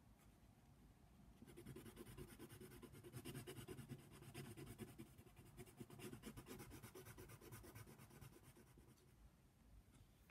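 Coloured pencil shading on paper in a colouring book: faint, rapid back-and-forth scratching strokes. They start about a second and a half in and thin out near the end.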